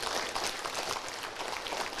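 A seated audience applauding: many hands clapping at once in a dense, even patter.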